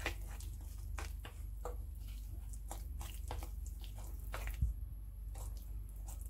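A spoon stirring flour into a wet dough mixture in a glass bowl: soft squelching with irregular light clicks and scrapes of the spoon against the glass.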